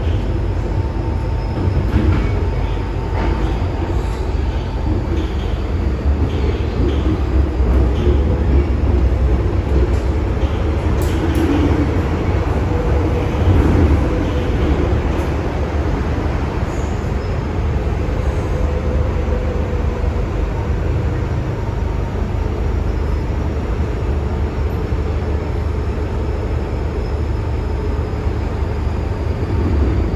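MTR M-Train electric multiple unit running, heard from inside the carriage: a steady low rumble of wheels and running gear, with a faint whine above it. The sound swells briefly about halfway through.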